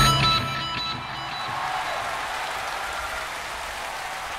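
A rock band's final chord, with electric guitar, ringing out and fading within the first second, followed by steady audience applause.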